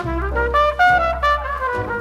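Jazz trumpet playing a melody with the band, played back from a vinyl LP.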